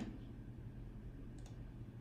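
Quiet pause with a low hum, broken by a single short click about one and a half seconds in.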